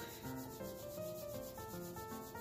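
Hands rubbing briskly up and down over a cotton T-shirt to warm up against the cold, a soft fast scratchy rubbing, with quiet background music underneath.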